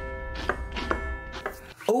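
A knife chopping on a cutting board, three strikes about half a second apart, over a sustained music chord and a low rumble. A voice cries "Oh, no" at the very end.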